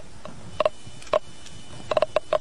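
Gamma radiation meter's audible counter giving a few scattered clicks, about three separate counts and then a quick cluster near the end. The low count rate, held to the bottom of a bottle of uranium, reads as not very radioactive.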